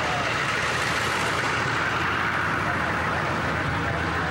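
Police van's engine idling close by: a steady running noise with a low hum underneath.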